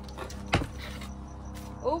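A single sharp plastic clack about half a second in as the lid of a plastic storage tote is pulled off.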